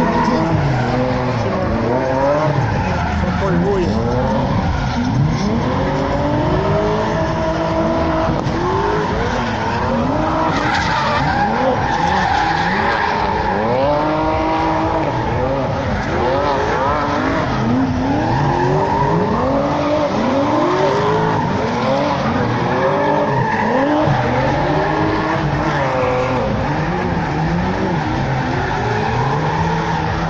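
Racing car engines revving hard and dropping back again and again as the cars are driven on the track, several rises overlapping.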